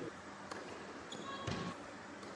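Tennis ball bounced on an indoor hard court: a light tap about half a second in, then a heavier bounce about a second and a half in, with a short high squeak just before and over it.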